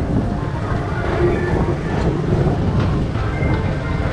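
Tomorrowland Transit Authority PeopleMover car running along its elevated track, a steady low rumble.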